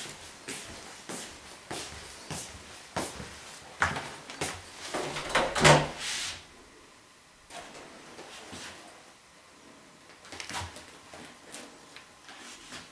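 Footsteps on a wooden floor, about one and a half steps a second, then a door being handled and opened with a run of clicks and knocks about four to six seconds in, the loudest of them near the middle. More scattered knocks follow near the end.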